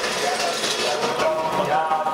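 Indistinct voices of people talking around a walking group, with music mixed in.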